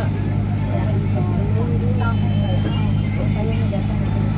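Tourist road train's engine running with a steady low drone, heard from inside one of its open carriages, with passengers' voices over it.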